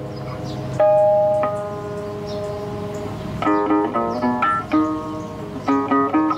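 Solo classical guitar: a couple of single notes ring out and sustain, then quick runs of plucked notes start about halfway through.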